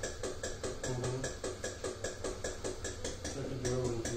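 Impulse oscillometry device's loudspeaker sending a rapid, even train of pressure pulses, about six a second, into the patient's airways through the mouthpiece during normal tidal breathing.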